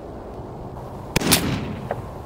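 A single shot from an AR-15 with an 18-inch Bear Creek barrel: a sharp crack about a second in, its report ringing on briefly and fading, with a faint tick near the end.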